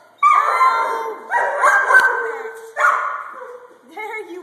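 Hound puppy barking three times, each bark sudden and drawn out, fading over about a second, with a sharp click about halfway through.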